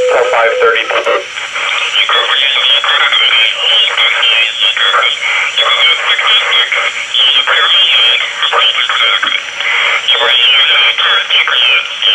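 A Uniden Bearcat scanner plays the intercepted transmission of a Uniden DX4534 cordless phone in voice-scramble mode. About a second in, a recorded voice turns into unintelligible, squeaky, garbled speech-like warbling with a thin, narrow radio sound. This is the phone's scrambler hiding the conversation from eavesdroppers.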